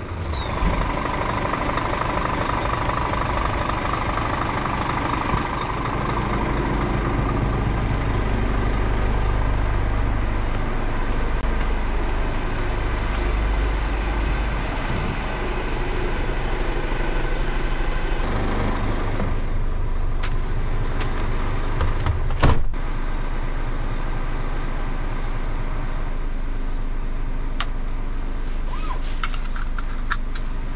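Scania truck's diesel engine running, a steady low drone, with a single sharp sound about three-quarters of the way through.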